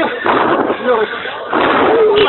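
Emergency phone call heard through the phone line: two harsh, crackling noise bursts with a voice mixed in between, the sound of the line being overloaded by loud commotion at the caller's end.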